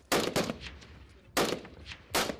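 Rifle shots fired at targets on a range: two sharp cracks close together at the start and a third about a second later.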